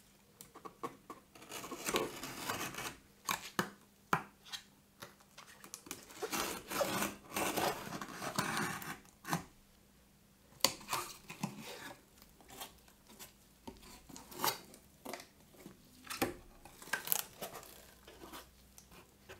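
A craft knife slicing and scraping through clear packing tape along the seam of a corrugated cardboard box, in long tearing strokes over the first half. After a short pause about ten seconds in, the cardboard flaps are worked open with taps, clicks and rustling.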